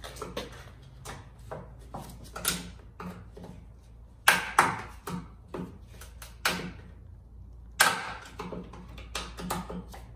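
Irregular clicks, clatters and knocks of parts being handled and pulled out of an open Lexus GS 350 door, with sharper knocks about four and a half and eight seconds in.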